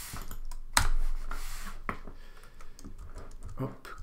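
Computer keyboard keystrokes and mouse clicks in quick, irregular succession, with one louder knock about a second in.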